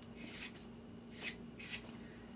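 Fingers rubbing and brushing across the rough edge of a melted recycled HDPE block: three short, faint scratchy strokes.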